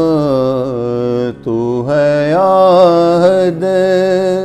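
A man's voice singing a Sufi Urdu kalam in a long, drawn-out melisma. He holds notes with a wavering pitch and breaks for a short breath about a second and a half in.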